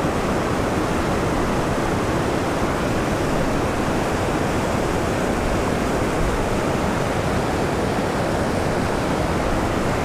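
Creek water rushing steadily through churning whitewater rapids, a loud, even roar with no break.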